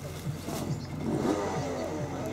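Racing kart engines on the circuit at a distance, several at once, their pitch rising and falling as they accelerate and back off.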